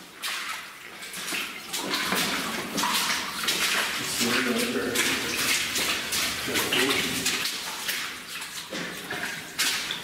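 Footsteps splashing through shallow water on a mine tunnel floor, an irregular run of wet steps, with a short stretch of voice in the middle.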